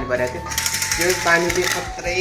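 Window blind being drawn open by its pull cord, the blind's mechanism clicking rapidly like a ratchet for more than a second.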